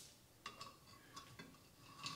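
Near silence with a few faint, short metallic clicks in the first half: hand-tool work on the fasteners of an old Husqvarna 65 chainsaw.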